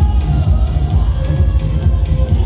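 Loud dance music with a strong, steady bass beat.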